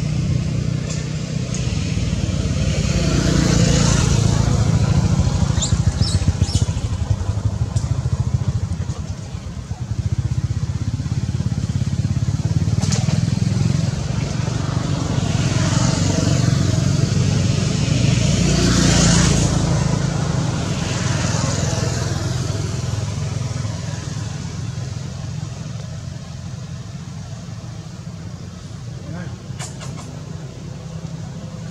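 Motor traffic: a steady low engine rumble, with vehicles passing several times, each swelling and fading over a second or two.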